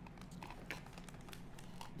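Faint crinkling and rustling of clear plastic packaging being handled, with a few small scattered clicks and taps.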